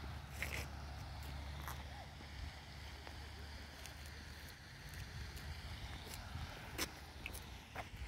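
Faint low rumble of wind and handling on a phone's microphone, with a few small clicks scattered through it.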